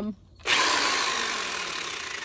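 Corded electric drill switched on about half a second in, its bit spinning freely in the air with a steady whir that slowly fades. It is a test run to check that the drill turns the right way before drilling.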